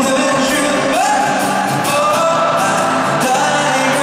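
Live amplified performance of a male singer accompanied by his own acoustic guitar: a sung line with held notes and a rising slide about a second in.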